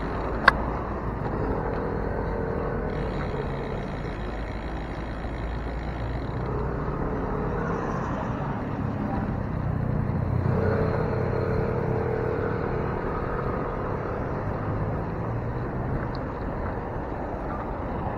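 Road traffic heard from a moving bicycle: car engines and tyres running past in a steady noise, now and then rising as a car draws alongside. A single sharp click about half a second in.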